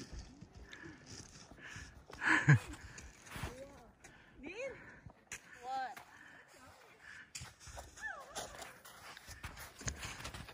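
Footsteps crunching irregularly in snow on a slope, broken by a few short wordless vocal calls. A louder burst of noise comes about two seconds in.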